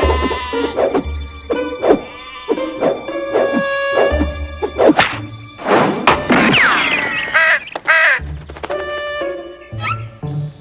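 Cartoon background music with comic sound effects for a sling shot: several sharp knocks as the stone flies and strikes, a falling glide partway through, and a sheep's bleat.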